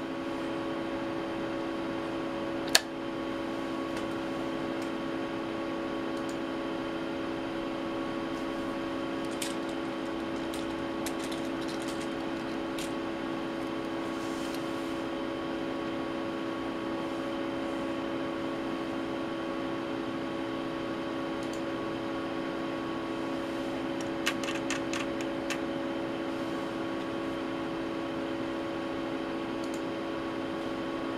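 Steady hum of running electronic test-equipment cooling fans, several fixed tones over a soft whir. One sharp click comes about three seconds in, and a quick run of light clicks about four-fifths of the way through as a front-panel thumbwheel on the network analyzer is turned.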